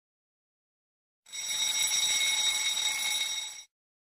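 Alarm-clock-style ringing sound effect marking the end of a countdown timer. It starts about a second in, rings steadily and high for about two and a half seconds, then cuts off suddenly.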